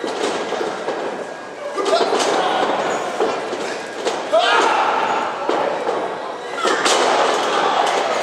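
Wrestlers' bodies slamming onto the ring canvas: several sharp thuds a second or two apart, echoing in a gym hall. Spectators shout over them.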